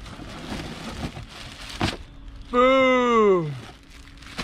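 Cardboard box flaps and plastic-wrapped clothing rustling and crinkling as a box is unpacked by hand, with one sharp tap just before the middle. About two and a half seconds in, a man gives a long drawn-out exclamation that slides down in pitch.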